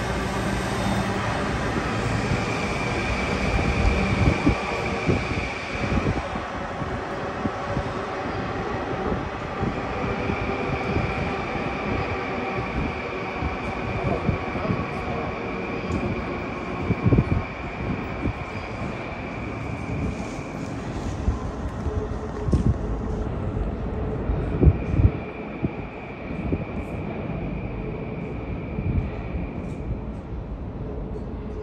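Long Island Rail Road electric train pulling away from an underground platform into the tunnel: a steady rumble of wheels on rail with a high steady whine that fades in and out. A few sharp knocks come in the second half.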